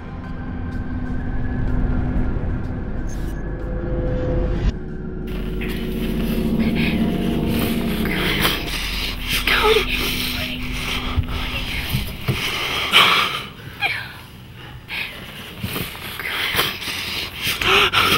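Low, droning suspense music for the first several seconds, then close, heavy breathing and gasps with rustling and scuffing of clothing.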